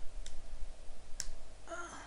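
Two computer mouse clicks, then a short electronic beep near the end as an SAP error message comes up.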